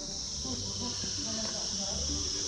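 Steady high-pitched insect chorus, crickets or cicadas, with faint voices underneath.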